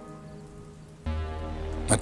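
Background score: a sustained chord fades away, then a new, lower held chord with a deep bass note comes in about a second in.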